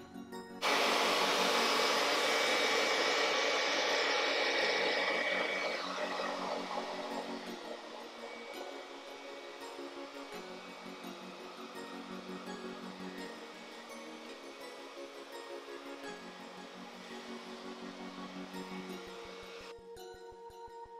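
Handheld blow dryer switched on about half a second in and blowing steadily for several seconds, then fading away under soft background music.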